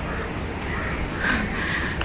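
A bird calling faintly a couple of times near the end, over steady outdoor background noise.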